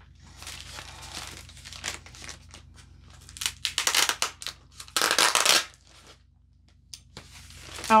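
Clear plastic bubble packaging crinkling and tearing as it is pulled open by hand, with a run of loud rips at three and a half to four seconds and a longer, louder rip at about five seconds.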